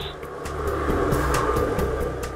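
Played-back dinosaur roar from animated life-size dinosaur sculptures: one long, rough roar that swells about half a second in and eases off near the end.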